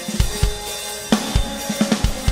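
Live death metal band playing a passage without vocals: the drum kit leads, with irregular bass drum and snare hits and cymbals over held chords.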